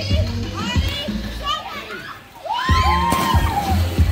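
Music with a steady bass beat plays under children's and adults' shouts and calls. After a brief lull a little past halfway, a loud, drawn-out shout rises.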